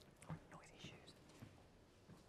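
Near silence: the room tone of a large hall, with a couple of faint, brief soft sounds in the first second.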